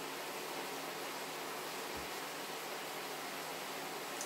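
Steady sizzling hiss of a frying pan of onions and peppers cooking down in stock on the hob.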